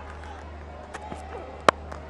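Cricket bat striking a leather ball in a drive: one sharp crack about three-quarters of the way in. Steady stadium crowd murmur runs underneath.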